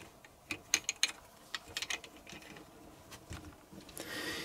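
Plastic parts of a Transformers Devastator action figure being handled and clicked into place: scattered light clicks, with a small cluster a little under a second in and another around a second and a half in.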